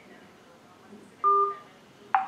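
A single short electronic beep, steady in pitch, about a quarter second long, a little past one second in, of the kind a telephone keypad or call system gives.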